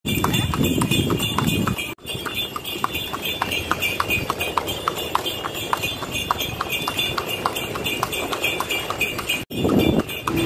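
A cart horse's hooves clip-clopping steadily on an asphalt road, about four hoofbeats a second, as it pulls a dokar.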